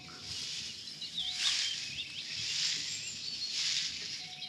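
Outdoor countryside sound effect on an old radio-drama recording: a few faint bird chirps over a rustling hiss that swells and fades several times.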